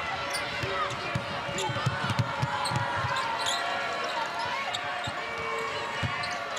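A basketball being dribbled on a hardwood court, about three bounces a second at its steadiest, with sneakers squeaking against the floor and the arena's crowd noise underneath.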